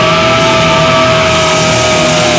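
Live thrash metal band playing loud: distorted electric guitars, bass and drums. One long high note slides up just before and is held throughout, drifting slowly down.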